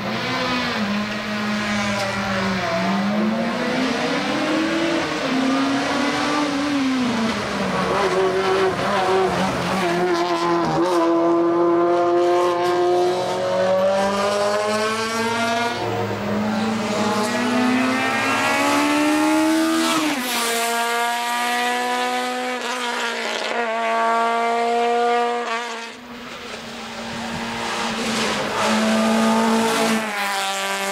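A Honda Civic hill-climb race car's four-cylinder engine revving hard through the gears, its pitch repeatedly climbing and then dropping at shifts and braking, heard from the roadside as it passes several times. Some tyre squeal mixes in.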